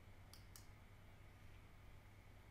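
Near silence: room tone with a low hum, and two faint computer-mouse clicks in quick succession about half a second in.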